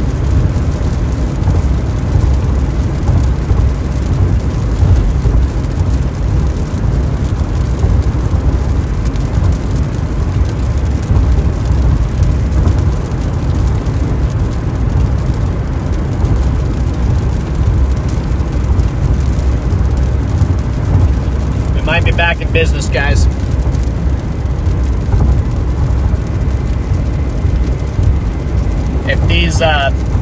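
Steady low rumble of road noise inside a car driving at highway speed on wet pavement.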